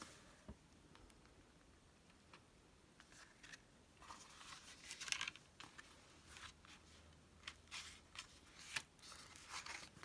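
Faint rustles and light taps of the stiff paper pages of a small pocket notebook art journal being turned and handled by hand, in short scattered bursts over a near-silent room.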